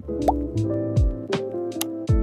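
Background music with a steady beat: deep kick drums that drop in pitch, crisp hi-hat ticks and held synth notes. About a quarter second in, a short rising bloop like a water drop sounds over it.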